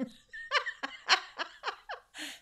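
A woman laughing in a run of short bursts.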